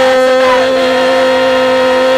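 Youth choir holding one long, steady sung note at the end of a line, with slight wavering voices over it.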